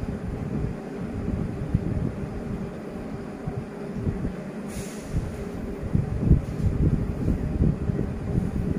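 A low, uneven rumble with no speech, its energy held in the bass, and a brief hiss about five seconds in.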